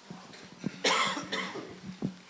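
A short cough close to a handheld microphone about a second in, followed by a smaller one, with a light knock from the microphone being handled as it changes hands.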